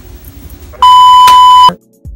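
A single loud, steady electronic bleep tone, of the kind edited in to censor a word, lasting just under a second and cutting off abruptly.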